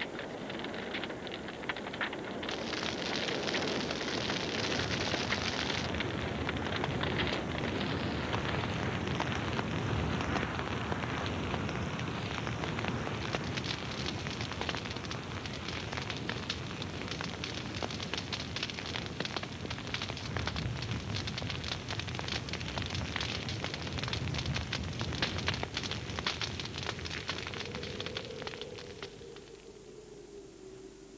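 Dry grassland burning: dense crackling over a steady rushing noise, fading away near the end.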